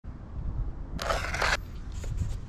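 A brief crunching scrape lasting about half a second, about a second in, over a steady low rumble.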